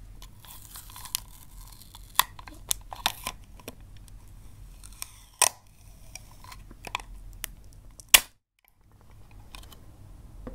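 Fingernails tapping and clicking on a clear plastic sticky-tape dispenser as it is handled: scattered sharp clicks, the loudest about eight seconds in, followed by a half-second gap of silence.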